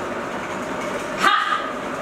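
A glass bottle spinning on a fabric mat, with a sharp, bark-like shout of "Ha!" about a second in.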